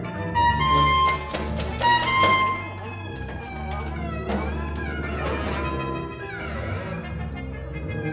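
Free improvisation by a small ensemble with tuba, cello and percussion: a low held note runs under high sustained tones and sharp struck hits in the first few seconds, then sliding, bending pitches take over in the middle.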